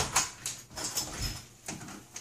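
A house front door being unlocked and opened from outside: a run of sharp clicks and knocks from the lock, latch and handle as it swings open.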